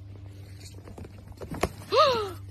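Horse hooves clip-clopping on a dirt track, uneven, with a louder knock about three-quarters of the way through. A pitched, falling animal call begins right at the end.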